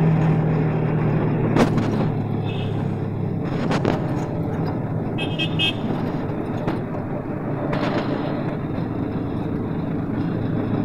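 Auto-rickshaw's small engine running with road and traffic noise coming through the open-sided cab, with a few sharp knocks from the ride. A vehicle horn toots briefly, about five seconds in.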